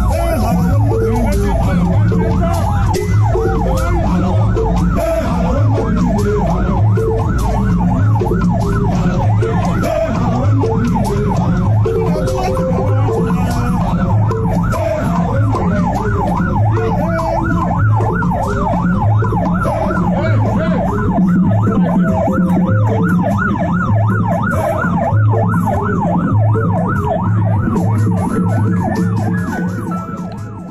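Vehicle siren yelping, its pitch sweeping up and down a few times a second, over a low pulsing hum.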